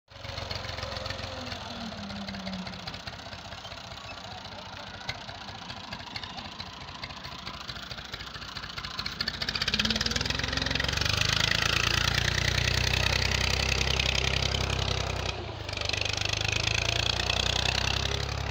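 Farm tractor engine running steadily as it pulls a disc harrow through the soil, louder from about halfway through, with a short dip near the end.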